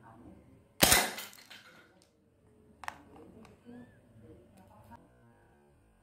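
Black Mamba P377 pistol firing a single shot about a second in: a sharp report that dies away over about a second. A fainter sharp knock follows about two seconds later.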